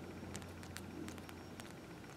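Faint scattered clicks of a plastic 7-inch NECA action figure being handled as its head is turned, over a low steady hum.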